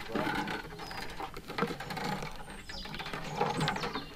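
Scraping, creaking and knocking as a wooden nest box and its rope are worked into place against a tree trunk, a busy run of short clicks and squeaks.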